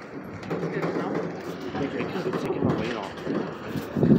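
Indistinct voices of several people talking in the background.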